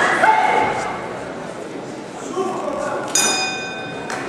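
Spectators shouting in a large hall, then about three seconds in a boxing ring bell is struck once and rings on with several high, steady tones, signalling the end of the round.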